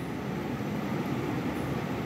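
Small 9-volt DC submersible water pump running steadily underwater in a glass bowl, switched on by the cold-water push button: a steady low hum.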